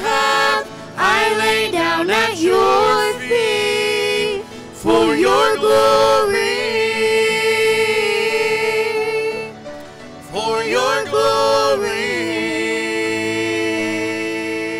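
A small worship vocal group of four, men's and women's voices together, singing a worship song in harmony through handheld microphones, in phrases with short breaks between them, ending on a long held chord near the end.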